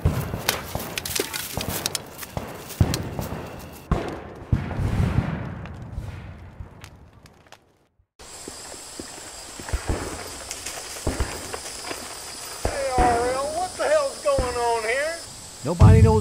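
Clattering knocks and footsteps of people moving about in a hurry, fading out to silence about eight seconds in. Then a steady insect chorus starts up, with a few short pitched vocal calls a couple of seconds before the end.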